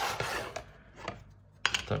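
Cardboard miniatures box rubbing and scraping as a stuck plastic base is worked out of it, then a single sharp click about a second and a half in as a plastic base drops free.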